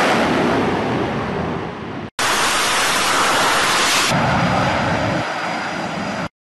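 F/A-18 fighter jet engines at full thrust during a carrier catapult launch, a loud steady noise. It cuts off abruptly about two seconds in, then a second loud stretch of jet noise follows and changes near four seconds in.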